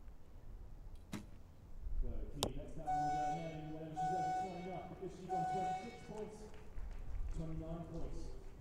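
Two sharp clicks about a second apart, then a person's voice for a few seconds, with three short held notes in it.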